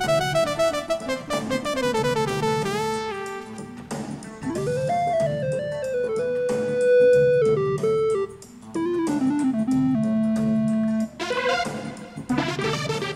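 Roland Fantom 7 synthesizer playing a dry, single-line lead solo: quick falling runs, a note bent upward about four seconds in and held, then more falling phrases over a low backing part. Brighter chords come in near the end.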